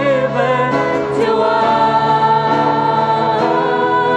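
Live worship song: acoustic guitar accompanying a group of voices singing together in long, held notes.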